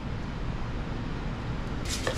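Steady low kitchen room noise with no distinct events, then a sudden rustle right at the end.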